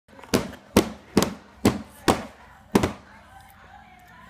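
A baby slapping the plastic tray of a high chair with a hand, six sharp smacks about half a second apart that stop about three seconds in.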